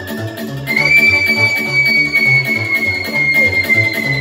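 Romanian pan flute (nai) playing a sârbă dance tune: after a short break it holds one long high note that sinks slightly in pitch, over a keyboard backing with a quick, even dance beat.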